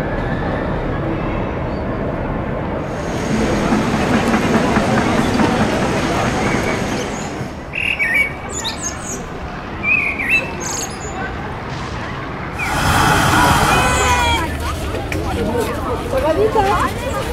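A steady murmur of people and street noise, then several short, high bird chirps through the middle, then several people talking close by near the end.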